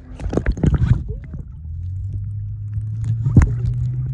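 Underwater audio from a swimmer's camera: water crackling and bubbling around the lens for about the first second, then a steady low hum through the water, with a sharp click about three and a half seconds in.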